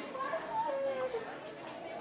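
Background chatter of several people, including children's higher voices, too indistinct to make out words.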